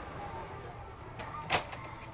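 Hands working on an opened printer: one sharp click about one and a half seconds in, with a few fainter clicks around it.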